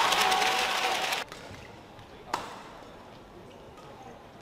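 Cheering and clapping in an indoor badminton hall, stopping abruptly about a second in. Then one sharp racket strike on a shuttlecock, as a rally starts, a little past halfway.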